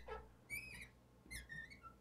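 Marker tip squeaking against a glass lightboard as a formula is written: a few short, faint, high squeaks.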